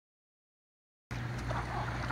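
Silence for about the first second, then outdoor background noise cuts in suddenly, with a steady low hum.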